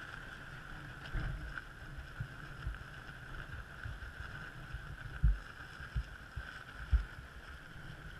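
Wind buffeting the microphone in uneven gusts, with the strongest thumps a little past five seconds and near seven seconds. A steady high hum runs underneath.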